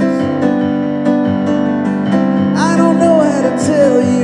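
Live keyboard playing sustained piano-like chords that change every second or so. A voice comes in about two and a half seconds in with a long, wavering sung note.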